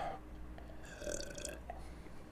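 A man sipping beer from a glass: a short, faint slurp and swallow about a second in.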